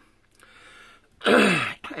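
A man coughs once, clearing his throat, about a second in, after a near-quiet pause.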